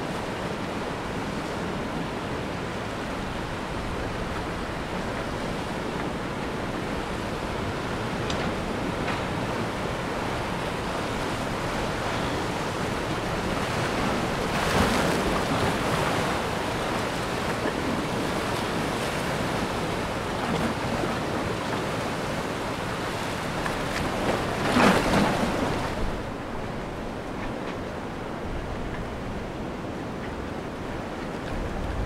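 Sea surf washing and breaking against concrete tetrapods along a breakwater, a steady wash with louder surges about halfway through and again near 25 s, quieter for the last few seconds.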